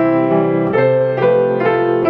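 Grand piano playing a slow passage of chords, several struck one after another across the two seconds and each left ringing under the next; the rolled chords are played with their notes struck together rather than spread.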